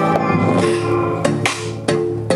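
A song playing loudly through Nylavee SK400 USB-powered desktop computer speakers during a sound test. Held notes run throughout, with sharp drum hits starting about a second in.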